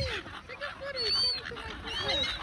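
A flock of silver gulls calling: several short, arched calls overlapping one another, one high call standing out about a second in.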